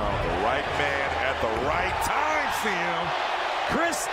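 NBA game broadcast audio: arena crowd noise with indistinct voices and a basketball bouncing on the hardwood court.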